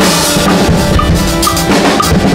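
A full drum kit played loudly in a dense, driving pattern: kick drum, snare and cymbals hit together, with a small high tick recurring about twice a second.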